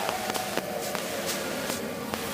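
Hot cooking oil sizzling with a steady hiss in a large wok as a wire strainer of cassava crackers is held over it, with a few faint ticks.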